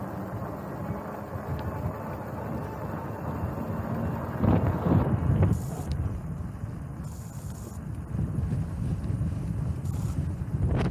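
Wind buffeting the microphone of a camera on a moving bicycle, a steady low rumble. A few knocks about halfway through, likely from the bike jolting over joints between the concrete slabs.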